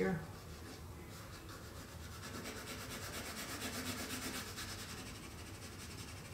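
Pencil shading on textured drawing paper: rapid back-and-forth strokes give a faint, dry scratching that builds through the middle and eases off near the end, as the shading under the thigh is darkened.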